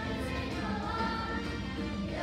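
A children's chorus singing together over a musical accompaniment.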